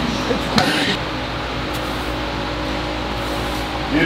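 Steady room hum with faint sustained tones, after a brief vocal sound about half a second in.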